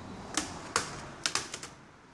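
Sharp plastic clicks, about six in a second and a half, from the bottom access cover of a Toshiba NB550D netbook's plastic case as it is pried loose and its clips snap free.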